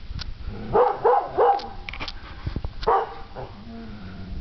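A dog barking: three quick barks about a second in, then one more a little over a second later.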